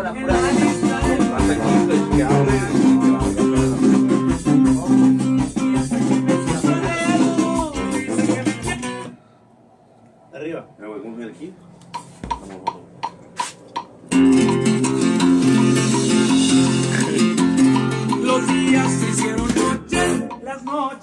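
Corrido music with plucked guitars and bass. It stops about nine seconds in, a few single plucked guitar notes sound alone, and the full band comes back in about five seconds later.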